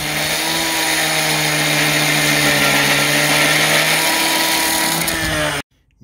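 Two-stroke gas cut-off saw with an abrasive wheel running hard while grinding through steel flat stock: a steady engine drone under a loud, high grinding hiss. The sound cuts off suddenly about five and a half seconds in.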